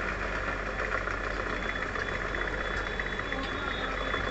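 Steady background hum with a faint high tone, with no distinct knocks or clicks standing out.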